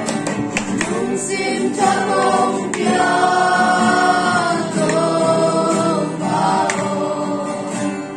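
A small group of men and women singing a worship song together to a strummed acoustic guitar, with long held notes in the middle of the phrase.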